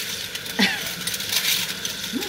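Dishes and utensils clinking and knocking against each other in irregular light clicks, as in dishwashing at a sink.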